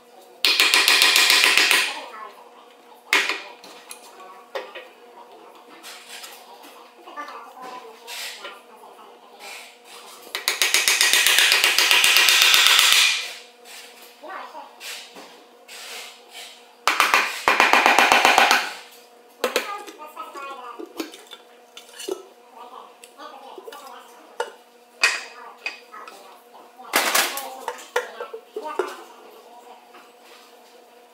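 Pneumatic air hammer run in three bursts of a second or two each against the edge of a steel differential cover, the rapid strikes breaking the cover's seal from the axle housing. Scattered metal clinks and knocks between the bursts as the cover loosens.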